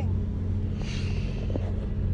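Steady low engine drone with a deep hum, heard from inside a car cabin on a ferry under way, with a brief rustling hiss about a second in.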